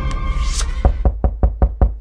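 The end of a jingle in the first half-second, then rapid knocking on a tree trunk: about seven quick knocks in a second.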